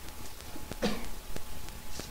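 A person's single short cough about a second in, over a faint steady electrical hum and a few soft scattered clicks.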